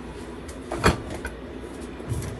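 Cupboard door being opened: one knock a little under a second in, with a few lighter clicks around it.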